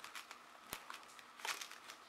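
Faint rustling and clicking of a small cardboard box being handled as its flap is opened, with one sharp click a little under a second in and a short cluster of crackles about a second and a half in.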